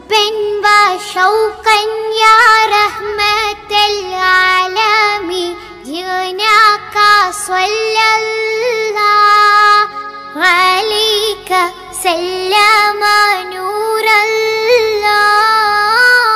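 A high-pitched voice singing an Islamic devotional song in praise of the Prophet, with long, wavering, ornamented notes.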